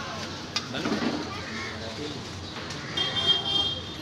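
Busy street ambience with people talking in the background, a single sharp click about half a second in, and a brief high-pitched tone about three seconds in.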